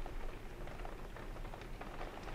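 Steady light rain outside a window: a soft, even hiss with a few faint drop ticks.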